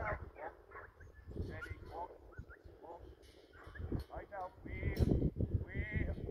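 A dog close by whining and yipping in short, high-pitched calls, which come more often and louder near the end.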